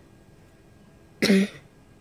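One short, loud burst of a person's voice a little over a second in.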